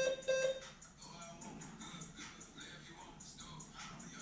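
Two short electronic beeps in quick succession from a gym interval timer, signalling the change to the next one-minute station, then background music.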